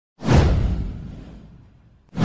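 A whoosh sound effect with a deep low boom. It hits suddenly a moment in and fades away over about a second and a half.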